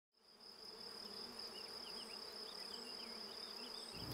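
Honeybees buzzing around a wooden hive, fading in from silence, over a steady high-pitched insect call, with a few faint short chirps.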